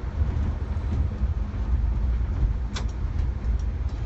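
Steady low rumble of engine and road noise inside the cabin of a large vehicle, probably a bus, moving at freeway speed, with one short click about three seconds in.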